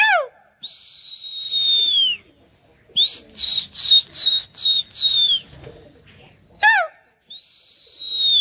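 Loud, shrill human whistling to a flock of pigeons in flight. It starts with a long held whistle that drops at the end, then comes a quick run of about six short whistles, then another long falling whistle. Two brief high calls slide downward, one at the very start and one near seven seconds.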